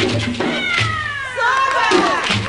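The drumming breaks off and high voices give long, falling cries, several overlapping, before the djembe and dundun drums come back in at the end.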